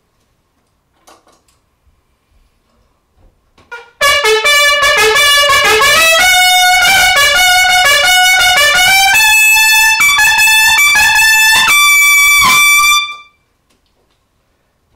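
Trumpet played solo: after a few seconds of quiet, a loud passage of notes climbing into the upper register, ending on a long high held note that then stops. It is played to show breath compression, which the player afterwards calls so easy, barely holding the horn.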